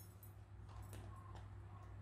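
Near silence: a steady low hum of room tone with a few faint clicks in the middle.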